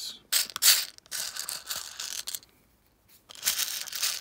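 Fingers sifting through a compartment of loose plastic LEGO minifigure hands and parts, the small pieces rattling against each other in three stretches.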